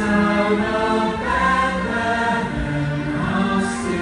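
Large choir singing slow, held chords, the harmony changing about a second in and again midway, with a brief sung 's' near the end.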